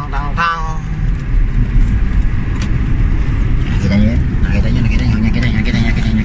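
Steady low rumble of a car's engine and tyres heard from inside the cabin while driving. A man's singing voice trails off in the first second, and he hums low from about four seconds in.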